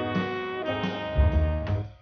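Instrumental music with held notes that change every half second or so over a low bass line, stopping just before the end.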